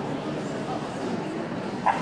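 A dog gives a single short, sharp bark near the end.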